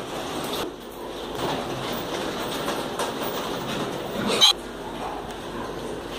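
A pen of young piglets in a large pig barn: a continuous jumble of pig calls from many animals, with one short, loud sound about four and a half seconds in.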